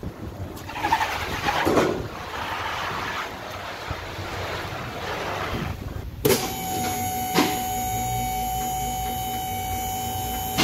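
Shop background noise: a rushing, even noise for about six seconds, then an abrupt switch to a steady, high-pitched machine hum with two sharp knocks.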